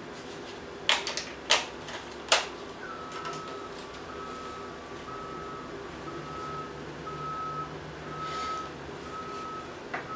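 A few sharp plastic clicks as a wireless flash transmitter is slid and locked onto a camera's hot shoe, followed by a steady electronic beep repeating about every three-quarters of a second.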